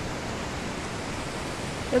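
Steady rushing of a creek, an even wash of water noise.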